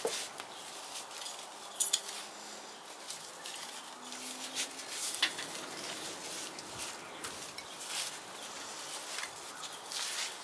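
Metal hand trowel digging into soil: gritty scrapes and scoops with a few sharp clinks, about four, spread through the stretch.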